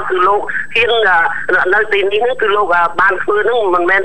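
Speech only: a voice talking almost without a break.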